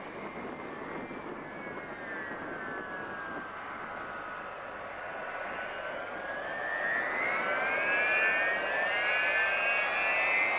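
Ilyushin Il-76 jet freighter on approach with its landing gear down, its four Soloviev D-30KP turbofans whining over a steady roar. The whine dips in pitch through the middle and then rises again, growing louder over the last few seconds as the aircraft comes closer.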